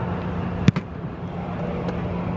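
An American football placekick: the kicker's foot strikes the held ball once, a single sharp hit about two-thirds of a second in, over a steady low background hum.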